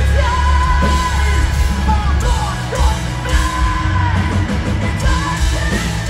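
Post-hardcore band playing live: the lead vocalist sings and yells held, sliding lines over distorted electric guitars, drums and heavy bass.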